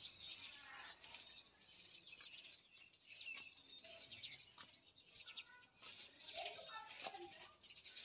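Faint bird chirps: a short, high single note repeated about every two seconds, with a few soft taps and faint voices in the background.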